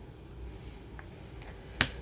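A single sharp click near the end as trading cards in rigid plastic holders are handled, with a fainter tick about halfway through, over faint steady room hum.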